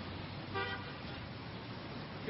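A single short car horn toot about half a second in, over a steady hiss of city street traffic.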